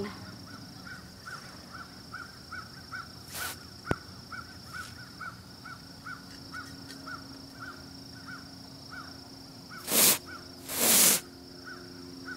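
An upside-down can of compressed-air duster spraying: one brief hiss a few seconds in, then two longer hissing blasts near the end. Held inverted, the can sprays its liquefied propellant rather than gas, cold enough to freeze the nozzle.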